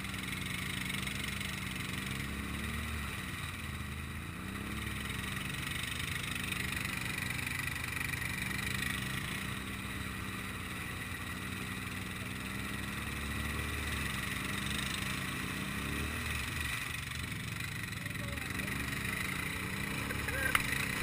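ATV engine idling steadily, its pitch wavering up and down at times.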